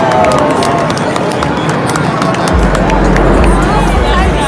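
A large street crowd shouting and cheering, many voices at once, with scattered sharp claps or clicks. A deep low rumble joins about two and a half seconds in.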